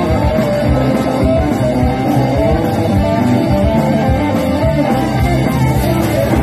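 A live rock and roll band playing an instrumental passage: piano or keyboard over a steady drum beat.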